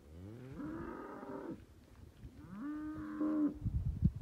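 Cattle mooing twice: a first moo that rises in pitch and then holds, and a second, steadier moo starting about two and a half seconds in.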